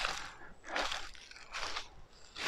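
Footsteps crunching through dry leaf litter and twigs on the ground, about three steps.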